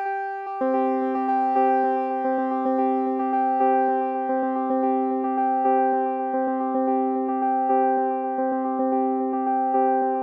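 Synthesizer notes looping through an eight-tap digital delay, the echoes repeating in a steady rhythmic pattern and not fading because the feedback is set to full. A low-pass filter in the feedback loop dulls each pass, so the tone slowly grows darker.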